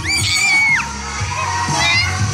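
A child's single long, high-pitched shout, held for under a second and dropping at its end, over background music with a steady bass.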